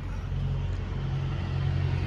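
Semi-truck diesel engine idling steadily: a low, even hum.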